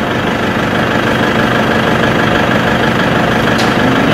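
Steady engine-like running sound, like a motor idling, even in level throughout, with a faint short click about three and a half seconds in.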